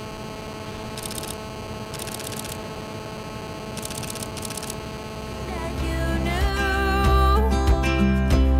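Canon DSLR shutter firing in rapid bursts, four short bursts in the first half, over a steady low hum. Music fades in from about halfway and is the loudest sound by the end.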